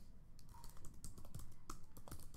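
Typing on a computer keyboard: a quick, irregular run of keystrokes entering a word, about ten keys in two seconds.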